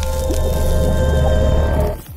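Loud intro music with sustained tones over a heavy bass, dropping away quickly near the end.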